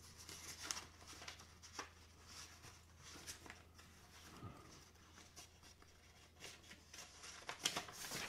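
Very faint handling noises, scattered soft rustles and clicks, over a steady low electrical hum.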